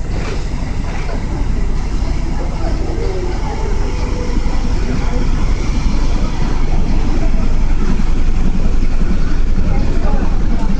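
A tugboat's diesel engine running as it passes close by, a steady low rumble that grows louder through the second half, with people's voices faint in the background.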